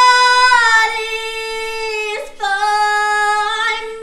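A woman singing solo, loud, holding a long high note, then after a brief breath about two seconds in, a second long note a little lower.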